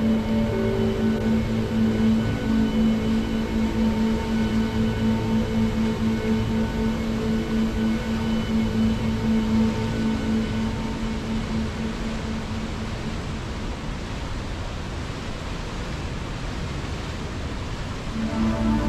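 Slow ambient music of long held notes over the steady rush of a river. The music fades out about two-thirds of the way through, leaving mostly the even rush of water.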